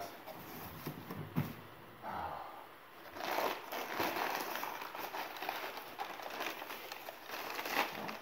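Crumpled packing paper rustling and crinkling as hands dig through a cardboard box, with a few light knocks in the first second and a half; the rustling grows louder from about three seconds in.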